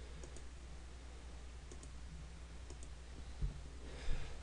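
Faint computer mouse clicks, a few quick pairs of clicks as objects are selected and erased on screen, over a low steady hum, with one dull thump near the end.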